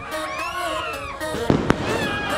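Fireworks going off: two sharp bangs a fraction of a second apart, about a second and a half in.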